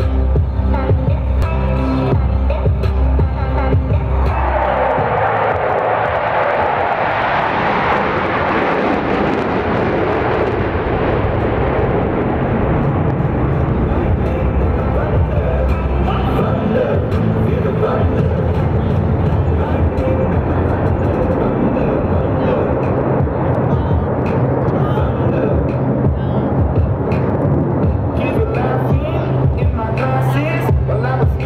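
Jet noise from a Blue Angels formation swells suddenly about four seconds in and fades over the next several seconds. Music plays throughout.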